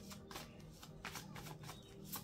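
A deck of cards being shuffled by hand: a quiet, rapid run of soft flicks and slides as the cards pass over one another.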